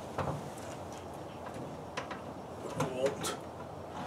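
Wire rack of a Masterbuilt electric smoker sliding in along its rails: a few light metal clicks and scrapes.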